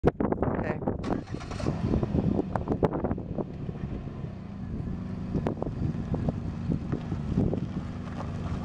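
2006 Pontiac G6 sedan's engine running with a steady low hum, the car pulling away near the end, with gusty wind buffeting the microphone.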